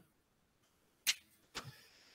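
Dry-erase marker strokes on a whiteboard: one short scratchy stroke about a second in, then two quicker ones about half a second later.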